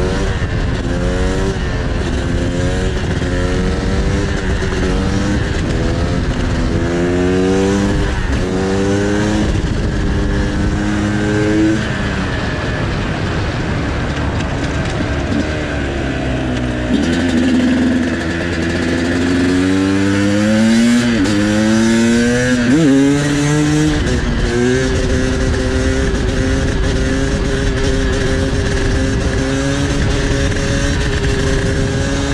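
Sherco 300 two-stroke supermoto engine accelerating hard up through the gears, its pitch climbing and dropping back at each upshift. About halfway through it eases off, then pulls through the gears again and settles into a steady high note at speed. Heavy wind noise on the microphone runs throughout.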